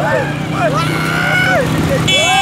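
Young men riding a motorcycle whoop and call out in long, high-pitched voices that slide up and down, over the steady running of the motorcycle engine.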